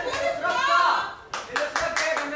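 A voice calls out, then hands clap in a quick, even rhythm of about six claps a second, starting a little past halfway.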